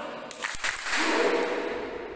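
Group clapping chant: a voice calls out, two sharp claps come about half a second in, then many voices shout together, loudest about a second in and fading toward the end.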